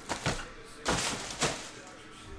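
Hands handling trading-card packaging on a desk: a few short knocks and rustles, the loudest about a second in, then a faint hiss.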